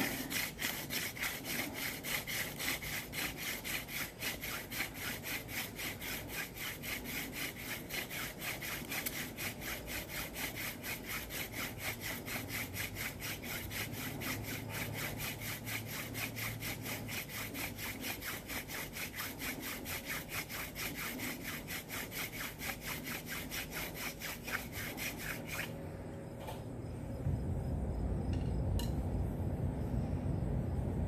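Wooden hand-drill spindle spun back and forth between the palms in the notch of a wooden hearth board: a rasping, rhythmic wood-on-wood friction at a fast, even pace, grinding out the dust that builds an ember. The drilling stops about 26 seconds in, and a low rumble follows near the end.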